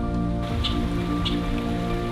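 Soft instrumental background music with long held notes, and two light high ticks about half a second apart.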